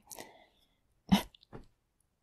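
A single short voice-like burst about a second in, followed by two fainter ones.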